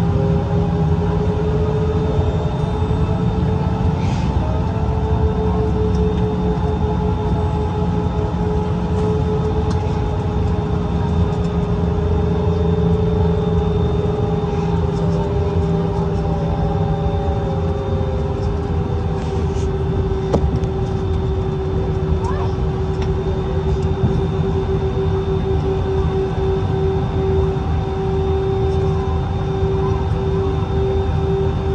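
Airbus A319 cabin noise with the plane on the ground: a steady low rumble from the jet engines at low power, with a steady humming whine over it and no spool-up.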